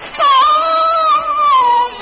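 A woman singing one long held note in Cantonese opera style. The note starts with a small dip, wavers slightly and falls in pitch just before it ends.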